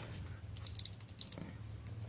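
Small metallic clicks of a test light's spring alligator clip being clamped onto the negative terminal of a motorcycle battery, a few faint clicks about halfway through.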